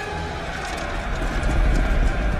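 A large army charging on foot: a dense low rumble of many running feet with clattering, growing louder about one and a half seconds in.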